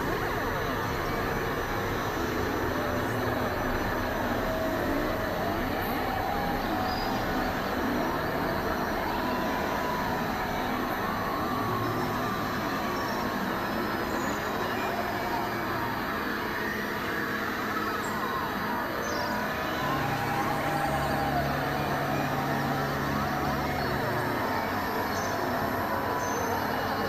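Experimental industrial noise-and-drone music from synthesizers: a dense, steady wash of noise with many wavering, sliding tones. A low held tone comes in about twenty seconds in and drops out about four seconds later.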